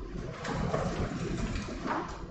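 Paper rustling and shuffling as stacks of paper case files are picked up and handled, with a few sharper handling knocks.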